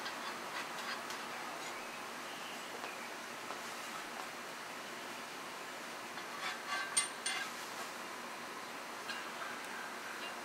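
A few sharp metallic clicks and clinks about two-thirds of the way through, as the parts of a steel shovel tool are handled, over a steady faint room hiss.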